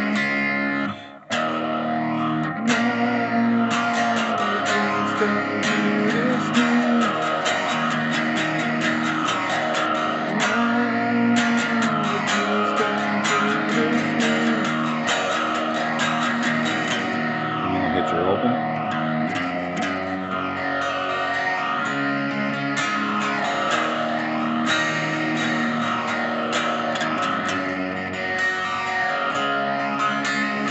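Electric guitar tuned a half step down (E-flat tuning) playing a continuous rock chord part built on E minor, with a suspended note added on the top string. It drops out briefly about a second in, then plays on.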